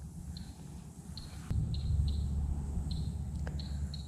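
Outdoor waterside ambience: a low rumble that gets louder after a click about a second and a half in, with short, faint high chirps repeating at irregular intervals.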